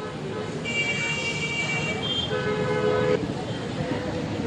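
Vehicle horns sounding in road traffic: a higher horn held for about a second and a half, then a lower horn for about a second, over a steady hum of traffic.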